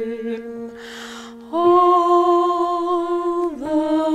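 A woman singing a slow solo with piano accompaniment. After a softer held tone, she comes in about a second and a half in on a long sustained note, then moves to a new note shortly before the end.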